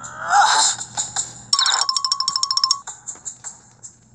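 Electronic music and sound effects from a tablet story app: a gliding sound in the first second, then a steady high beeping tone with rapid pulses for about a second in the middle.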